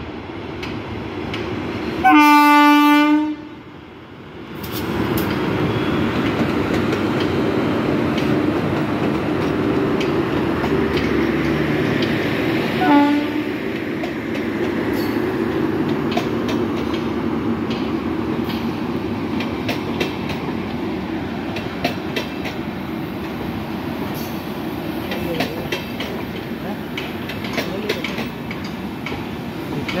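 Electric locomotive's horn sounds one loud blast about two seconds in and a short toot near the middle. LHB passenger coaches then roll past slowly, with a steady wheel rumble and clicking over the rail joints.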